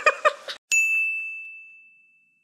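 A single bright ding: one struck, bell-like chime with a clear high ringing tone that fades away over about a second and a half, starting just under a second in.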